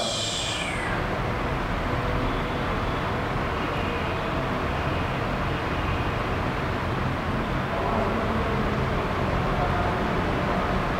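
Steady background noise with a low hum and rumble, at an even level throughout.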